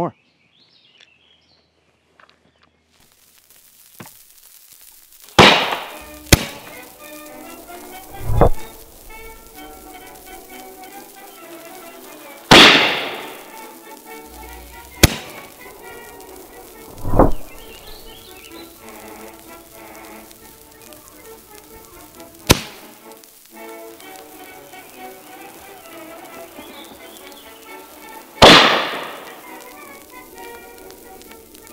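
A series of sharp black-powder reports from a Traditions Mini Ironsides miniature cannon, about eight in all, the loudest three with long echoing tails, over background music that comes in a few seconds in.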